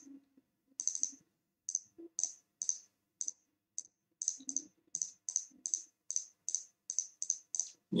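A computer mouse clicking repeatedly, a run of short sharp clicks at about two to three a second, more evenly spaced in the second half.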